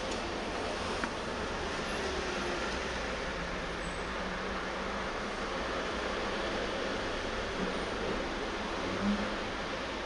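Steady background noise of an underground car park heard from inside a parked, silent electric car with its driver's door open, with a faint knock about a second in.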